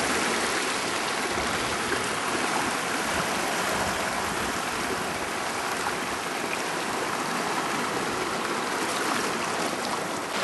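Ocean water washing and swirling over shoreline rocks, a steady rushing sound.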